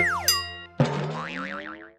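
Animated TV-channel logo sting: a synthesized jingle that opens with a steep falling pitch swoop, then about a second in a new hit with slowly rising tones and a warbling tone that wavers up and down about three times as it fades out.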